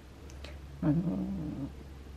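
A woman's voice drawing out the hesitation filler "anō" about a second in, over a steady low hum.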